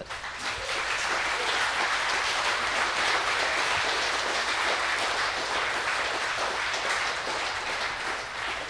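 Audience applauding: many hands clapping, building up within the first half second and then holding steady.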